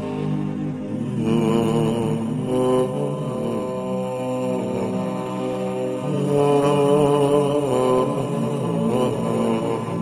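Slow, melodic vocal chanting with long held notes, laid over the footage as a soundtrack.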